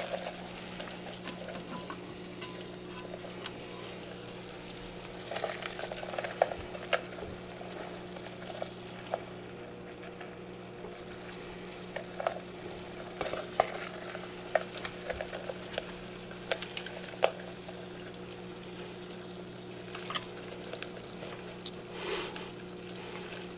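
Steady low electrical hum under scattered light clicks and crackles, the small handling noises of hands and objects around a glass vivarium.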